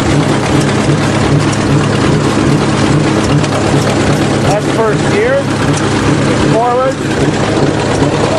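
Bulldozer's diesel engine running steadily at about half throttle, with a regular low throb, as it is put into first gear.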